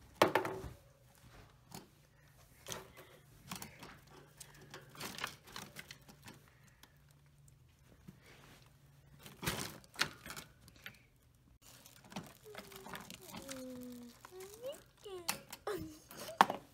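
A pet rabbit moving about its wire cage: scattered light clicks and knocks, with a sharp knock right at the start and two more about halfway through.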